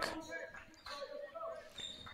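Faint basketball dribbling on a hardwood gym floor, with scattered voices in the gym.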